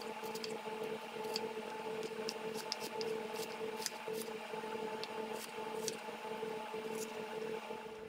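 Chef's knife slicing and dicing a red onion on a plastic cutting board: irregular sharp clicks as the blade taps the board, with a steady hum beneath.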